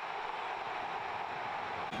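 Football stadium crowd cheering steadily just after the home side scores an equalising goal.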